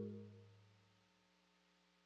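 The last notes of a marimba-like mallet melody ringing out and fading away over about a second, leaving near silence.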